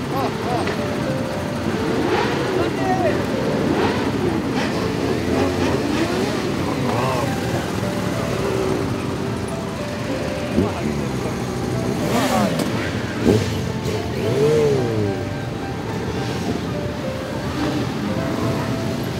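Motorcycle engines running amid a crowd's chatter and calling voices, with a couple of sharp knocks in the second half.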